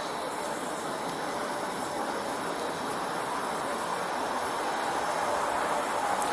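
Steady rush of passing interstate traffic, growing slightly louder toward the end.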